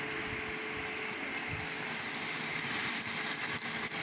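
A steady low hum and hiss of kitchen appliance noise, with a higher hiss that builds from about halfway through: food starting to fry in a steel pan.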